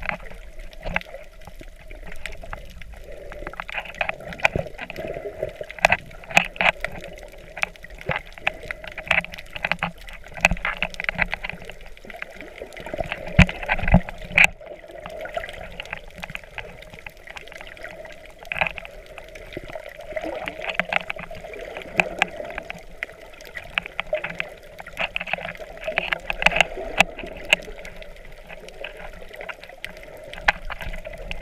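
Underwater sound picked up by a snorkeler's camera in its waterproof housing: muffled water movement with many short, sharp clicks and crackles scattered irregularly.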